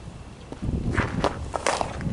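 Several short, gritty scuffs of cleats on infield dirt, about a second in and again near the end, over a low rumble of wind on the microphone.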